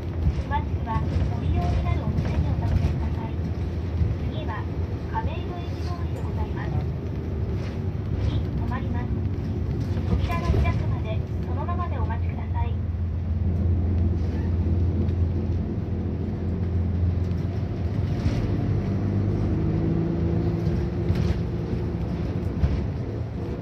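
A city bus engine and road noise heard from inside the moving bus, a steady low drone. Indistinct voices sound over it through the first half, and the engine note rises near the end as the bus accelerates.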